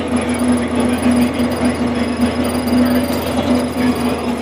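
Heavy earthmoving machine's engine running steadily as it drives over the dirt, heard from inside its cab as a loud, constant drone.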